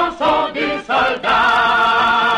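A chorus of voices singing the refrain of a French bawdy drinking song: a few quick sung syllables, then a long held chord from just past a second in.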